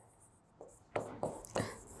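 Handwriting on a blackboard: a quick run of short, light scratching strokes as words are written, starting about half a second in.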